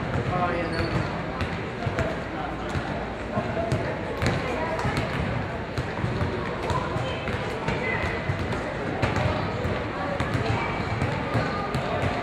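Basketballs bouncing on a hardwood gym floor, irregular sharp thuds several times a second, over the indistinct chatter of people in the gym.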